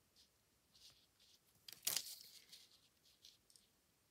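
Faint rustles from a paper stencil and card panel being shifted by hand, with one louder scraping rustle about two seconds in.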